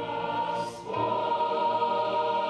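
Youth choir singing in Russian, holding full chords. A brief sibilant consonant comes about two-thirds of a second in, then a new, louder chord enters at about a second.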